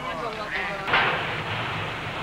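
A voice briefly, then a single sudden loud bang about a second in, with a short trailing tail.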